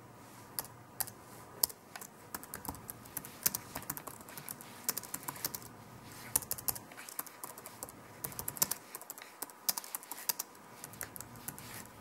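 Typing on a computer keyboard: irregular runs of quick key clicks with short pauses between words.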